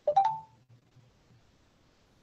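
A brief tone with a click in the first half second, then near silence.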